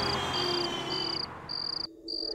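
Cricket chirping: short, evenly spaced high chirps about twice a second. The sound briefly drops out near the end.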